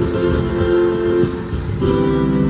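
A live acoustic band plays steadily: acoustic guitars over bass guitar and keyboard.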